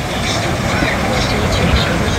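Rough sea surf breaking on a sandy beach, a steady loud rush of noise, with wind buffeting the microphone. Faint voices of people are mixed in.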